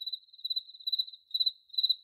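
A cricket chirping, a high pulsed trill repeating about two or three times a second.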